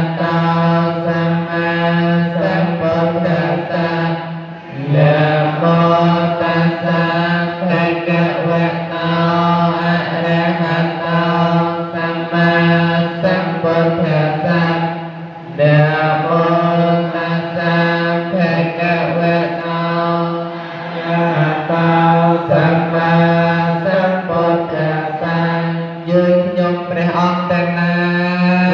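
Theravada Buddhist chanting by male voices, recited on a steady low pitch in long phrases with brief pauses for breath, the first about four seconds in and another near sixteen seconds.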